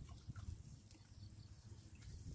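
Near silence: a faint low outdoor rumble with a few soft clicks.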